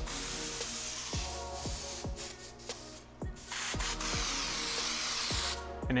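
Atmosphere Aerosol canned haze sprayed into the air in two long hisses of about two seconds each, with a short break between them.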